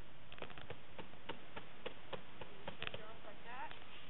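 A string of short, sharp clicks or pats, a few a second, with a brief high-pitched voice rising and falling near the end.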